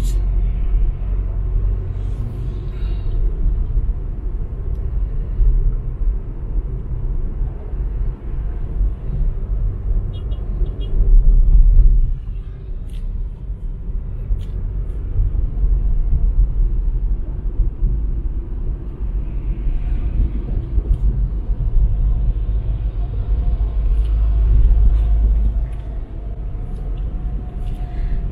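Low, steady road and engine rumble heard inside a moving car's cabin, swelling louder for a moment about eleven seconds in and again near twenty-five seconds.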